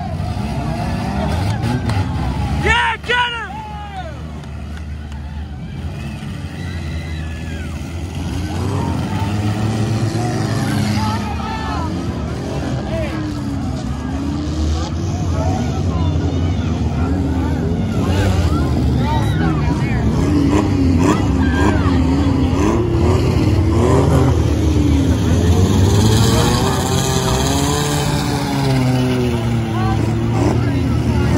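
Engines of small stock-class derby cars revving up and down over and over as the cars push and ram in the arena, with crowd voices throughout. A brief, loud, high-pitched sound stands out about three seconds in.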